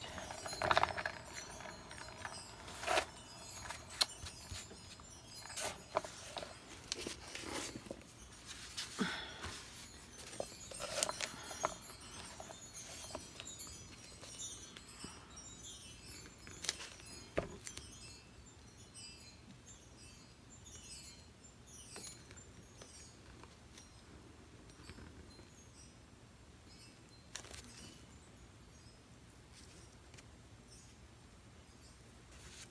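A hand-spun turntable carrying a wet acrylic pour canvas whirs briefly at the start. Scattered light clicks and taps of handling follow, thinning out and growing fainter in the second half.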